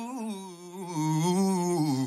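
A single unaccompanied voice singing a long, wavering note that slides lower in pitch, dropping further near the end.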